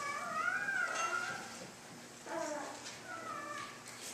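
A young child's voice in the congregation: three short, high-pitched whining or babbling calls, the first one longest, with pauses between them.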